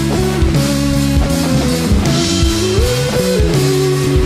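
A rock band playing live: an electric guitar and a drum kit, with no singing.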